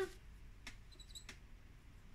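Faint handling of a felt-tip marker as its cap is pulled off: a few light plastic clicks and a brief high squeak about a second in.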